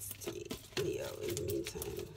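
A bird cooing in low, steady notes, a short call then a longer one, over soft clicks of oracle cards being shuffled by hand.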